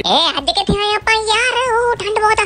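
High-pitched, synthetic-sounding singing voice, with bending notes and then a held, wavering note in the second half.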